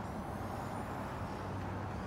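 Power liftgate of a 2017 Buick Enclave closing under its motor, a faint high whine in about the first second, over a steady low background rumble.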